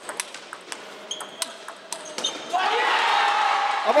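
Table tennis rally: a ball clicking off bats and table in a quick irregular series of sharp clicks in a large hall. About two and a half seconds in the rally ends and a loud burst of shouting and cheering from several voices takes over.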